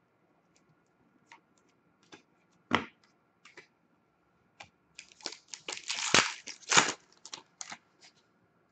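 Trading cards being handled and shuffled by hand: scattered clicks and taps of card stock, a sharp tap about three seconds in, and a run of flicking and rustling from about five to seven and a half seconds in.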